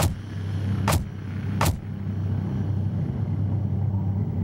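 A steady low rumble with three sharp knocks in the first two seconds.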